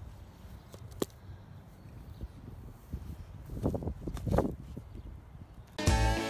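Hands pushing and patting loose potting soil and compost around a transplanted seedling, with a few short scrapes and rustles about three and a half to four and a half seconds in, after a single sharp click about a second in. Guitar music starts just before the end.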